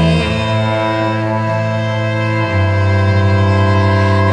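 Bowed cello and violin playing long sustained chords, with the cello's low note moving to a new pitch about halfway through.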